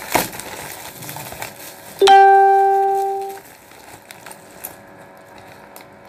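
A single plucked-string note, ukulele-like, rings out about two seconds in and fades away over about a second and a half. Faint crinkling of bubble wrap comes just before it.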